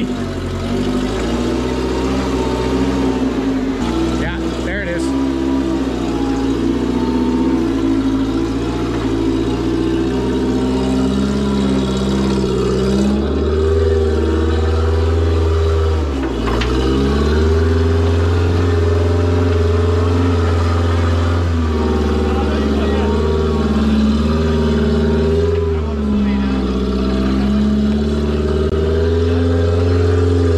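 Rock buggy's engine working under load as it crawls up a steep rock face, its pitch rising and falling with throttle and dipping briefly several times.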